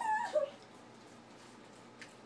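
A pug giving a few short, high-pitched yips and whines within the first half second as it snaps at the spray from a spray bottle.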